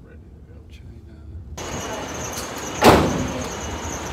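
Low rumble of a car cabin, then an abrupt switch to louder noise of traffic at the roadside, with a steady high hiss. A single sharp thump about three seconds in is the loudest sound.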